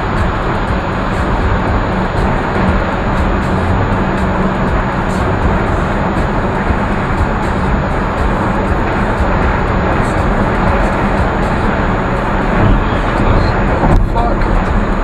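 Steady road and engine noise inside a car cabin at freeway speed.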